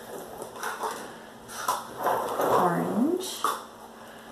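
Plastic paint cups being handled on a plastic-covered table: rustling with a few light clicks and knocks. A short rising vocal sound comes about two and a half seconds in.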